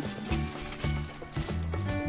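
Thin clear plastic bag crinkling and crackling as hands work small rubber pads through it and pull one out. Background music plays underneath.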